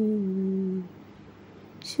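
A woman's chanting voice holding the last vowel of a sung phrase, sliding down in pitch and stopping under a second in; after a pause, a short breathy hiss near the end as the next phrase begins.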